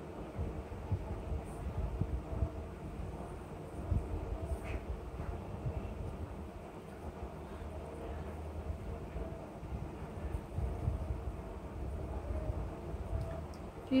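A low, uneven rumble of background noise, with a few faint wet ticks and splashes as a foam sponge is pressed down into a glass bowl of water to soak it up.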